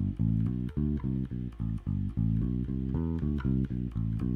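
Electric bass guitar playing a quick, even run of single notes, about six a second, each note plucked with just one right-hand finger instead of the usual alternating two fingers, as a technique exercise.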